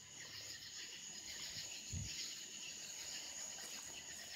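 Crickets chirring steadily and faintly, with one brief low thump about two seconds in.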